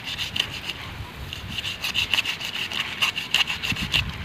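Knife blade scraping the scales off a large carp in quick, repeated rasping strokes.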